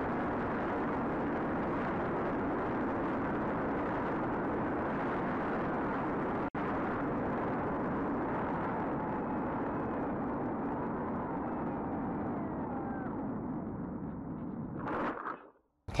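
Steady wind rush over the onboard camera of an FPV plane in flight at about 50 km/h, with a brief dropout about six and a half seconds in. The noise eases near the end, gives a short burst, then cuts off.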